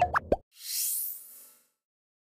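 Electronic outro jingle: a few quick pitched blips with short pitch glides, then a high shimmering whoosh that fades out by about a second and a half in.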